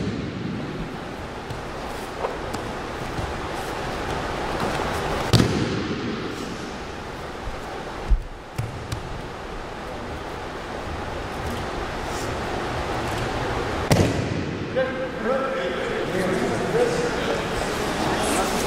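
Aikido breakfalls: a few heavy thuds of a body landing on a gym mat, about a third of the way in, near halfway and about three quarters through, over the steady noise of a large gym. A voice is heard briefly near the end.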